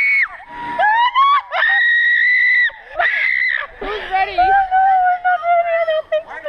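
Girls screaming on a giant swing: several long, high screams of about a second each, then a wavering cry and a long cry that slowly falls in pitch.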